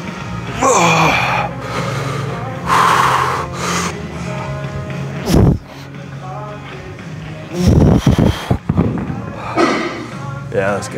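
Gym background music with short, forceful breaths during a set of dumbbell bench presses. Near the end comes a cluster of heavy, low thumps, the loudest sound here, as the dumbbells are set down after the set.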